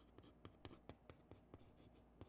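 Chalk writing on a chalkboard: a faint string of short, irregular taps and scratches as the strokes of characters are drawn.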